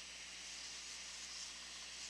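Faint steady hiss of room tone, with no distinct sound standing out.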